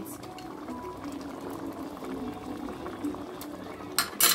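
Pot of porridge beans in sauce simmering steadily on the stove, a soft wet bubbling made of many small pops. A single sharp knock comes right at the end.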